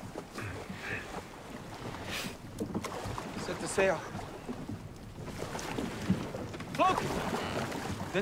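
TV drama soundtrack of a Viking longship out at sea: a steady rush of wind and water, with brief voices about four and seven seconds in.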